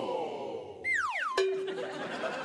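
Comic cartoon sound effect added in editing: a pitched whistle-like tone slides quickly downward about a second in, then drops suddenly to a held lower note.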